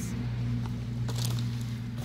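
Cardboard perfume boxes being handled and set down, a few light knocks and rustles, over a steady low mechanical hum.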